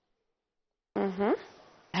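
Dead silence for about the first second, then a voice cuts in abruptly with one short utterance that fades out. Speech starts again at the very end.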